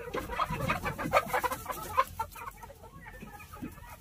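Domestic chickens clucking in a coop: many short, irregular clucks overlapping.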